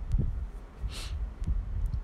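Irregular soft low thumps from handling at the painting table as a brush is brought to the paper, with a short hiss about a second in.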